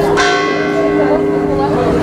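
A bell is struck just after the start and rings on, its many tones fading slowly over the ringing of an earlier strike.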